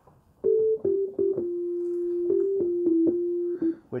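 Synthesizer patch in Native Instruments Massive playing a short single-note melody: a few short notes, one long held note in the middle, then a few more short notes, in a clean tone with few overtones.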